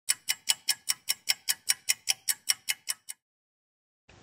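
Rapid, even ticking of about five ticks a second, sixteen sharp ticks in all, that stops about three seconds in and is followed by silence: a clock-like ticking sound effect.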